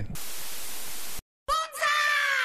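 A burst of white-noise TV static for about a second that cuts off suddenly. After a short gap comes a cartoon sound effect whose tone slides down in pitch.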